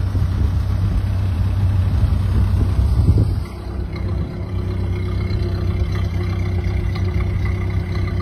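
1928 Ford Model A's flathead four-cylinder engine idling steadily, a little louder for the first three seconds or so.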